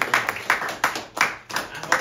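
Audience applause closing a talk, with hands clapping close by at about three sharp claps a second.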